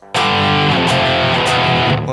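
Distorted electric guitar in drop D tuning: a low power chord barred with one finger straight across the three lowest strings, struck once just after the start and left ringing steadily.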